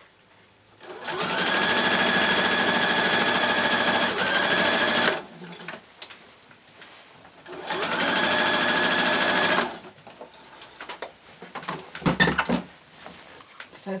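Electric domestic sewing machine stitching a straight seam through layered cotton lining in two runs of a few seconds, the motor speeding up at the start of each run. Short clicks and a knock follow near the end as the fabric is handled.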